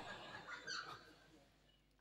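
The last of a man's amplified voice fades out, and a faint, brief sound follows just under a second in. Then everything cuts suddenly to dead silence for the second half.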